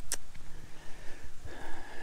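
A person's short, sharp breath twice at the very start, then low rumbling handling noise from a handheld camera carried while walking uphill.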